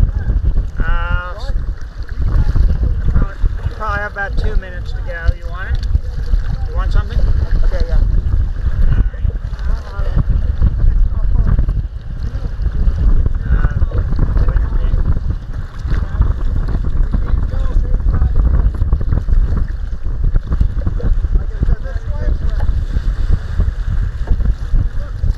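Strong wind buffeting the microphone in a loud, steady rumble, with choppy waves slapping against a kayak's hull.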